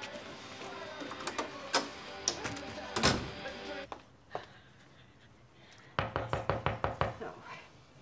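A door slams shut about three seconds in. Near the end comes a rapid run of about eight knocks on a door in a second and a half, an urgent knocking.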